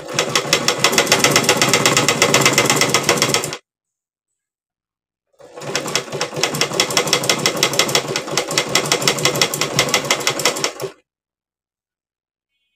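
Salika domestic sewing machine stitching a narrow folded hem in red fabric: a run of rapid, even stitching of about three and a half seconds, a pause of about two seconds, then a second run of about five and a half seconds that stops a second before the end.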